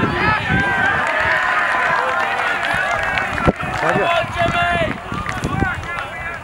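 Several voices shouting and calling at once from players and spectators at a rugby game, with one sharp knock about three and a half seconds in.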